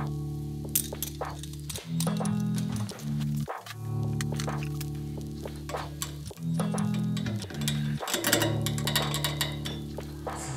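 Background music carried by a plucked bass-guitar line, its low notes changing every second or so, with short clicks over it.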